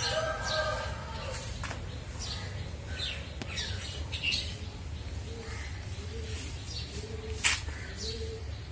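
Garden birds chirping, with many quick falling chirps throughout and a harsh call in the first second. From the middle on a short low note repeats about once a second, and a single sharp click comes near the end, over a steady low hum.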